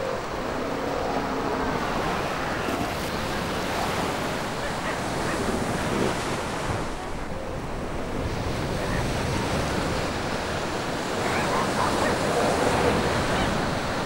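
Surf breaking on a beach: a steady wash of waves with wind, with faint short calls now and then in the background.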